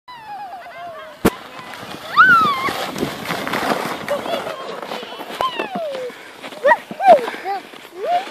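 High-pitched wordless squeals and calls from sledders, gliding up and down in pitch and loudest about two seconds in, over the hiss of a plastic sled sliding on snow. A single sharp knock comes a little after one second.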